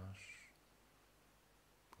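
The soft, breathy tail of a spoken word in the first half-second, then near silence: faint room tone.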